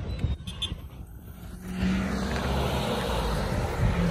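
A motor vehicle's noise swells about two seconds in and holds steady, after a quieter stretch with a few small clicks.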